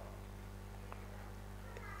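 A quiet pause holding only a faint, steady low electrical hum, with a faint tick about a second in.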